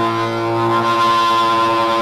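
Intro of a hardcore punk recording: one distorted electric guitar chord held and ringing steadily, with a high overtone growing stronger about halfway through.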